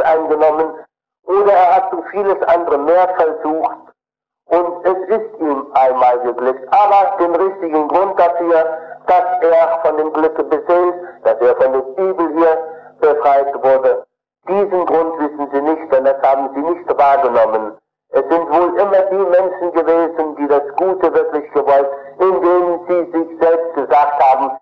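Speech: a man's voice talking in phrases broken by short pauses, from an old tape recording of a talk.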